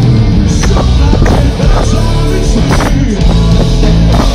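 A live rock band playing loud, with electric guitars, bass and drums hitting in a steady beat, heard from within the crowd.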